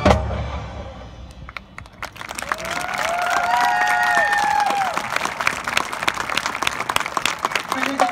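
A marching band's final chord cuts off and rings out, then about two seconds later the crowd in the stands breaks into steady applause and cheering, with a few whoops rising above it.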